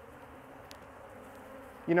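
Steady hum of honey bees flying around an open hive.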